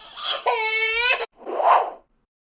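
A child's voice giving a breathy squeal, then a held, steady-pitched wail that cuts off abruptly after about a second. A short whoosh follows near the end.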